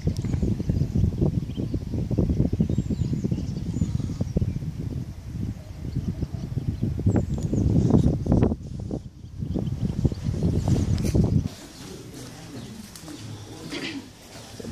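Wind buffeting the microphone: a loud, fluttering low rumble that cuts off suddenly about eleven and a half seconds in, with faint bird chirps above it.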